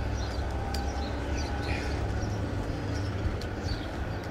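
Steady low rumble of street traffic along a city block, with a few faint high chirps over it.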